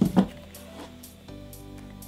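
Background music track playing steadily under the vlog.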